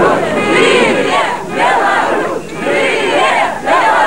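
Large crowd of demonstrators shouting together in unison, the chant swelling in loud waves a little over a second apart.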